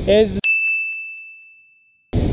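A single high-pitched ding, a bell-like chime sound effect. It starts abruptly as the road noise cuts out, then rings on one steady tone and fades away over about a second and a half.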